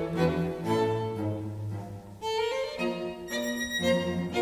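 Live string quartet (two violins, viola and cello) playing: a long-held low cello note under the upper strings, a brief softening about two seconds in, then the violins come back in more fully.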